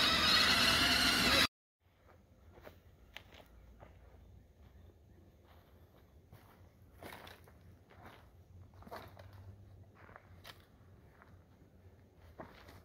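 Electric ride-on toy buggy driving over dirt, its motor whining with a dense rumble of wheels, cut off abruptly about a second and a half in. Then faint, scattered footsteps crunching on dry leaves and twigs.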